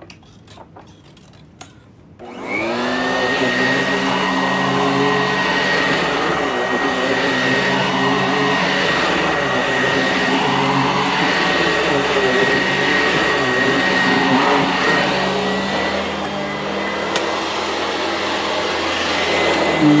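Sanitaire SC899 upright vacuum cleaner switched on about two seconds in, its motor spinning up with a rising whine and then running steadily with a constant high whine while pushed over carpet. A few faint ticks come before it starts.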